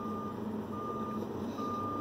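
A single-pitched electronic beep repeating a little more than once a second, each beep about half a second long, over the steady running noise of a truck cab.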